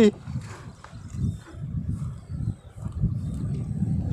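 Cast net being hauled by hand out of shallow river water: light splashing and dripping, under an uneven low rumble of wind on the microphone.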